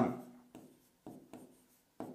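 Stylus writing letters on the glass of an interactive display panel: a handful of short, faint taps and scratches, one for each stroke of the letters.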